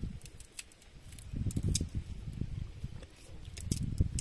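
Close-up chewing of roasted cashew nuts and boiled cassava: irregular crunchy clicks over low thumping sounds close to the microphone.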